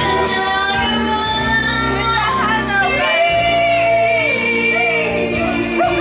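A woman singing a slow country duet into a microphone over instrumental backing, holding long notes that slide and waver in pitch.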